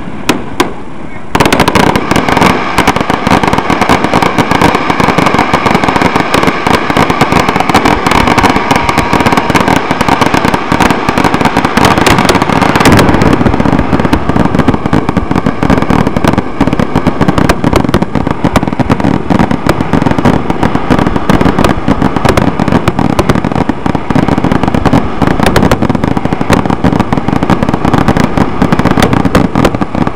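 Aerial fireworks display: shells bursting and crackling in a rapid, unbroken barrage. It is quieter for the first second, then goes loud.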